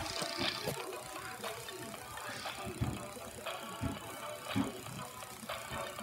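Animated plush baby hamster toy playing a song while it moves its rattle and blanket.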